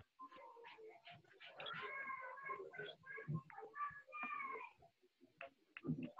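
Faint, high-pitched vocal calls, a run of short cries that glide up and down in pitch, coming through the call's audio.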